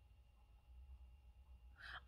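Near silence: room tone with a faint low hum, and a faint breath near the end just before speech resumes.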